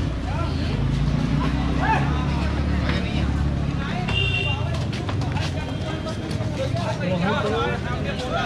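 Busy street ambience: scattered voices of passers-by talking over a low engine rumble that eases after about three seconds. A brief high-pitched beep sounds at about four seconds.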